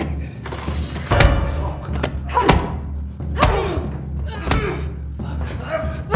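Sound of a film fight: a series of about five heavy thuds and knocks, some with short strained grunts and cries, over a steady low droning score.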